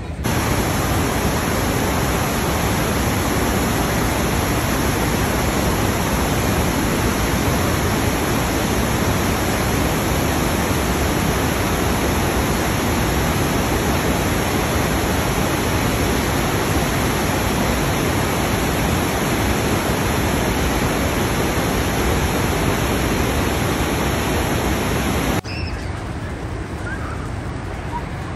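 Rushing water of a large waterfall, a dense, even noise at a constant loud level. It starts and stops abruptly.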